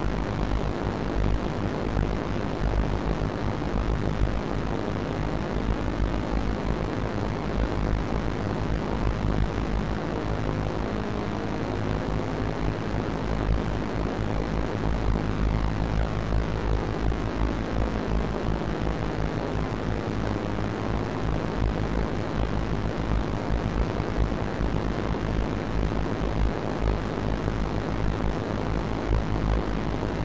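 Madwewe Minidrone, a handmade six-oscillator drone synthesizer, sounding a dense, steady low drone with a rapid flutter in the bass as its oscillators beat against each other. Some tones slowly slide in pitch as the oscillator knobs are turned.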